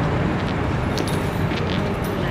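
Steady low rumble of a motor vehicle, with a couple of faint ticks about a second in and near the end.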